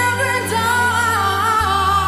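Female lead vocalist singing a live pop ballad, holding long wavering notes that bend in pitch over the backing music's sustained low bass notes.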